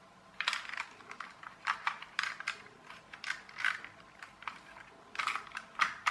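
Irregular clicks and scraping as the plastic body shell of a small friction-flywheel toy car is prised off its metal chassis by hand. The clicks begin about half a second in.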